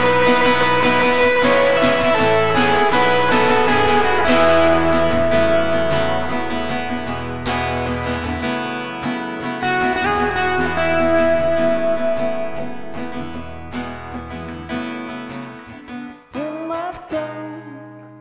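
Acoustic guitar played with a pick: an instrumental break of fast picked melody runs over held bass notes, loud at first and thinning out and getting quieter toward the end, where a singing voice comes in.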